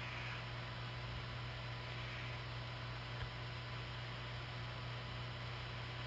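Steady faint hiss with a constant low electrical hum: background noise of the interview line while the guest's microphone is muted for a sneeze.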